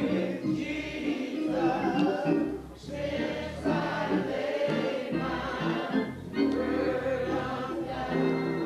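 A choir singing gospel music, in sustained sung phrases broken by short pauses about three seconds in and again just past six seconds.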